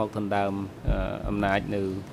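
Speech only: a man's voice talking in drawn-out syllables.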